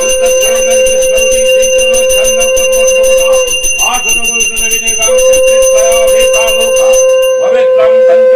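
Conch shell (shankha) blown in one long held note that breaks off for a breath about three and a half seconds in and resumes a second and a half later, over a hand bell rung rapidly throughout, as at a Durga Puja ritual.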